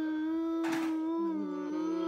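A toddler's long, drawn-out moaning wail held on one steady pitch, from a stomach ache, as his mother believes.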